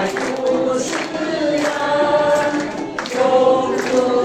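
A mixed group of amateur adult singers singing a Chinese song together in unison, with long held notes, accompanied by ukulele strumming.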